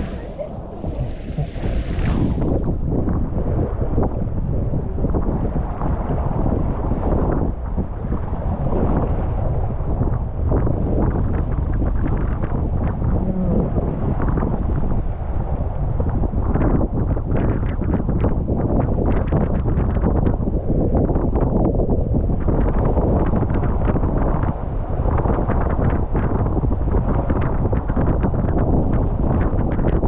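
Inflatable tube riding down an open water slide: water rushing and sloshing under the tube, with wind buffeting the microphone.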